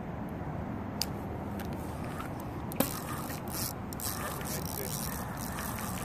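Steady outdoor background noise with a sharp click about one second in and another just before three seconds, then a few brief scraping rustles: handling of a fishing rod and reel while line is out to a fish that has taken the bait.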